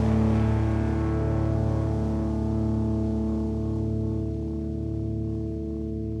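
A rock band's final chord: distorted electric guitar over bass, held and ringing out without drums, slowly fading.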